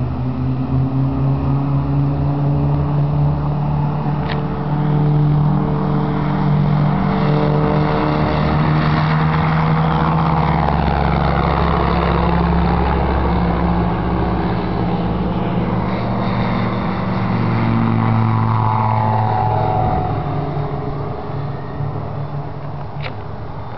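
Single-engine propeller light aircraft flying low past, its engine and propeller running at high power in one steady pitched drone. The pitch drops late on as the aircraft passes and moves away, and the sound fades slightly near the end.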